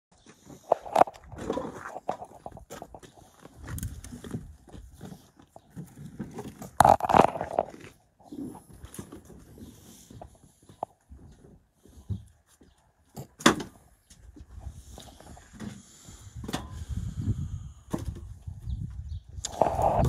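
Irregular knocks and rustling of cut tree logs being handled, with a few loud sharp knocks, and footsteps.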